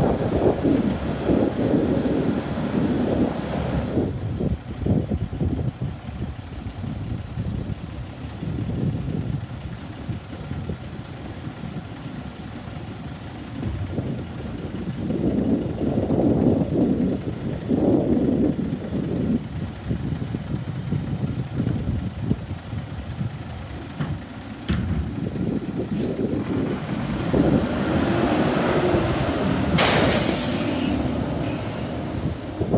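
Diesel engine of an International garbage truck with a Heil Durapack 5000 rear-loader body running at low speed, with wind buffeting the microphone. The engine grows louder near the end as the truck pulls up alongside, with a brief high squeal.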